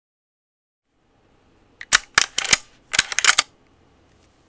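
Sharp metallic clicks and clacks in two quick bursts, about a second apart, as a lever-action rifle's lever is worked twice to cycle the action.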